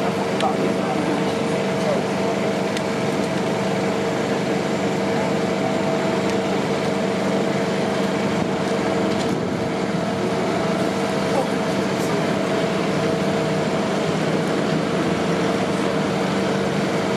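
Town-centre street ambience: a steady drone of traffic and engines with a constant low hum, and passers-by's voices mixed in.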